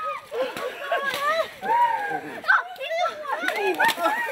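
Several excited children's and adults' voices shouting and laughing over each other during a water balloon fight. A couple of short sharp sounds stand out, one about halfway and one near the end.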